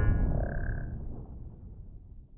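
The low rumbling tail of a cinematic boom from an intro soundtrack, fading away steadily, with a short faint tone about half a second in.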